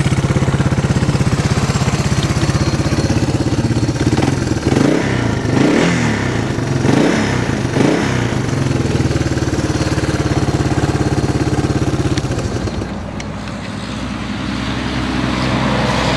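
A Yamaha 225DR three-wheeler's air-cooled four-stroke single-cylinder engine running at a steady idle, blipped up and back down several times in the middle.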